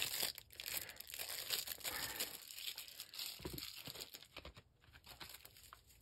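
Clear plastic packaging sleeve crinkling and rustling as hands handle it to pull out pens, in many small irregular crackles. It dies away about four and a half seconds in.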